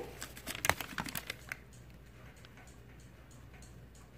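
Thin plastic produce bags crinkling and rustling as they are handled, a short run of rustles and clicks in the first second and a half, then only faint room tone.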